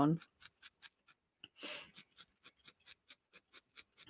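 A felting needle stabbing repeatedly into a wool star to firm and round out its points: a steady run of faint short pokes, about four or five a second. A brief soft hiss comes just before the halfway point.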